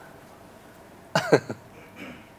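A single short cough from a person about a second in, over quiet studio room tone.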